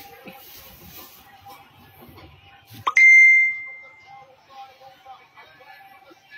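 A single loud metallic ding about three seconds in, a sharp strike that rings out as one clear tone and fades over about a second. Beneath it, faint television fight commentary and a steady hum.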